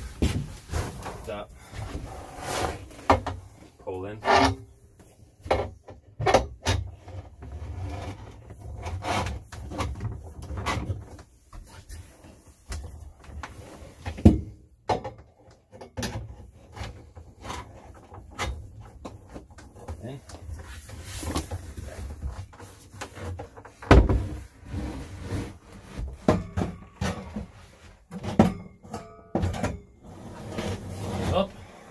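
Knocks, clunks and rubbing of a trailer dinette table being handled, as the tabletop is tilted and its two stainless-steel legs are fitted into floor-mounted pedestal bases. The knocks come irregularly throughout, with two louder ones, one about halfway through and one some ten seconds later.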